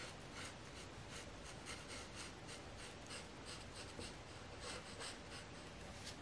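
Felt-tip marker rubbing across paper in quick, repeated colouring strokes, several a second, as an area of the drawing is filled in.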